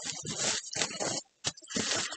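Clear plastic bag crinkling and rustling in irregular bursts as it is pulled off a mini fridge.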